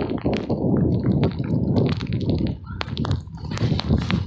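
Footsteps through wet grass, a quick irregular run of soft knocks and swishes, over a low rumble of wind and handling on a phone microphone.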